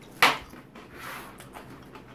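One sharp crunch a moment in as a small, hard square snack cracker is bitten into, followed by faint low-level noise.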